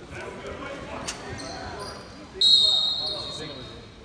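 A referee's whistle blown once, about two-thirds of the way in: a single shrill blast of about a second that dies away in the gym's echo, signalling the next serve. Before it, voices and a sharp click on the court floor.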